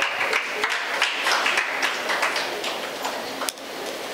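Audience applauding with a patter of many hand claps that thins out toward the end. A single sharp click sounds about three and a half seconds in.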